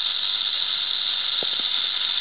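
Timber rattlesnake rattling its tail: a continuous, steady high buzz, the snake's defensive warning.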